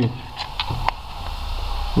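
Two short clicks from hands working among the engine-bay lines and fittings, then a low rumble with a hiss that builds toward the end.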